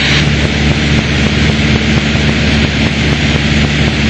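Piper Warrior's four-cylinder Lycoming engine and propeller droning steadily in cruise, heard inside the cockpit, with a steady hiss over the low hum.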